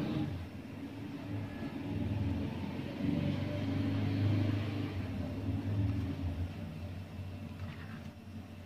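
A low, steady rumble that swells around the middle and fades toward the end.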